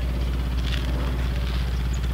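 A steady low machine hum, unchanging throughout.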